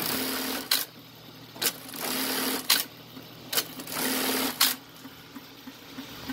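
Ruben's industrial bartack sewing machine stitching bartacks through webbing strap on doubled denim: three quick sewing cycles of under a second each, one after another. Each cycle ends with a sharp clack, and a second clack comes shortly before each next cycle starts.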